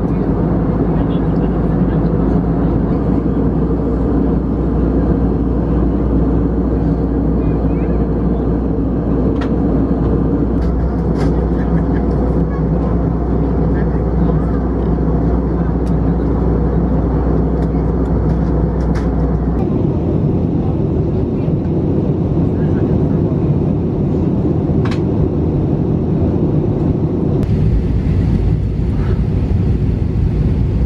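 Steady drone of an airliner cabin in flight, the engines and airflow heard from inside at a window seat. About twenty seconds in, the deep rumble drops away suddenly.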